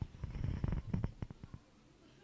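Handling noise on a live Recording Tech RT-HH-WM2 handheld wireless microphone as it is gripped and turned in the hand: a low, uneven rubbing rumble with small knocks, stopping about a second and a half in.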